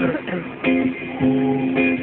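Live concert band music: strummed guitar chords held and changing about every half second, in a low-fidelity crowd recording.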